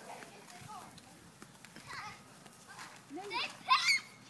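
Young children's high-pitched, wordless calls and squeals as they play, the loudest a shrill shout near the end.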